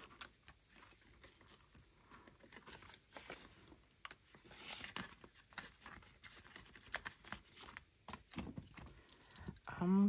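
Faint rustling and light clicking of paper sheets and plastic binder pouches being handled, with a longer rustling sweep about five seconds in.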